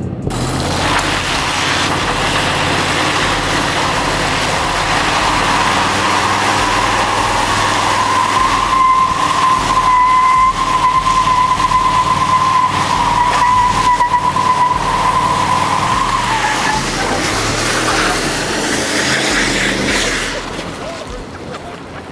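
A pickup truck doing a burnout on wet pavement: the engine runs hard with the rear tyres spinning and screeching. A steady squeal holds through the middle, and the noise dies down near the end.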